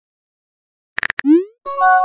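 Messaging-app sound effects: a quick run of keyboard-typing clicks about a second in, then a short rising pop, then a bright chime of several steady notes as a new text message comes in.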